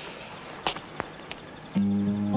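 A few light clicks, then an acoustic guitar starts playing near the end, its first low notes ringing on as a gentle song begins.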